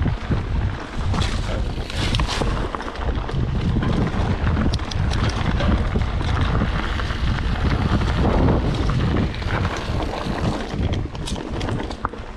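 Wind buffeting the microphone over the rumble of mountain bike tyres rolling on a dirt trail, with scattered sharp clicks and rattles from the bike.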